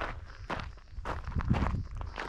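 Footsteps crunching on a gravel trail while walking, about two steps a second.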